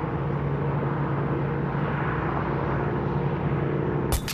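Steady drone of a car driving at speed, heard from inside the cabin: road and engine noise with a low, even hum.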